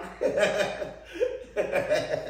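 A man laughing, in two short bouts of chuckling.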